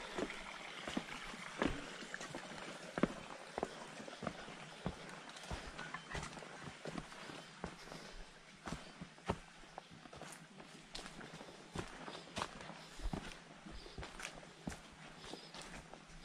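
Footsteps of a person walking along a leaf-strewn dirt forest trail: soft, irregular steps about once or twice a second.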